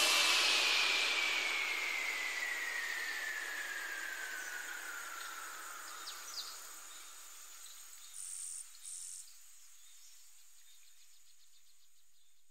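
Fading tail at the end of a bass-boosted trap track: a hiss with a slowly falling tone that dies away over about seven seconds. Two short, faint high chirps follow, just after eight and nine seconds.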